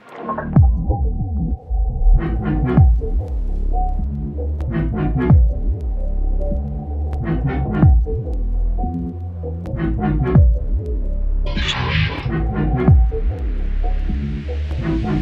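Experimental electronic (IDM) bass music: a deep sub-bass with repeated kick hits that fall in pitch, clusters of crisp percussion and a held tone over the top. It drops out for a moment at the very start, and a rising noise sweep builds near the end.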